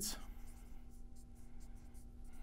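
Marker writing on a whiteboard: a run of short, faint, high scratchy strokes as letters are written.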